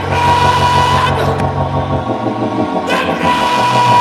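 Congregation voices singing or chanting together over steady, held music; a low note drops out about halfway through.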